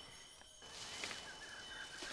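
Faint rainforest ambience that comes in about half a second in after near silence: a steady high hiss with faint, wavering chirping calls.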